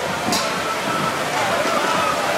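Steady outdoor crowd ambience: an even wash of noise with faint voices in the background, and a brief hiss about a third of a second in.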